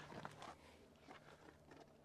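Near silence, with a few faint clicks and rustles in the first half second from a person climbing out of a car's driver seat.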